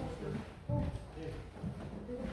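Faint, indistinct talking in a large room, mixed with a few knocks, the loudest about two-thirds of a second in.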